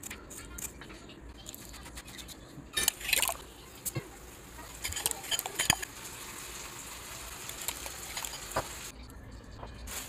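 Kitchen prep sounds: scattered clinks and taps of a metal spoon against a glass mixing bowl of beaten egg and a knife on a wooden chopping board. The clearest bursts of clinking come about three seconds in and again around five to six seconds in.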